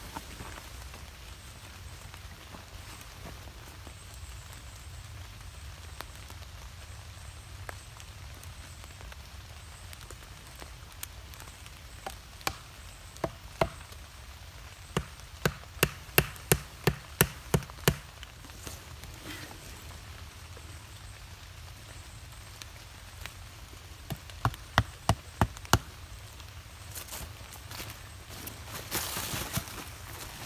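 Wooden mallet knocking tent stakes into the ground to pitch a canvas tarp: a few single knocks, then two runs of quick strikes, about three a second, midway through and again later on.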